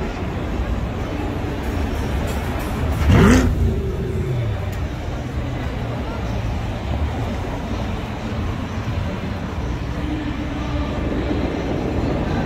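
Road traffic on a busy city boulevard. About three seconds in, one vehicle passes close, its engine pitch falling as it goes by.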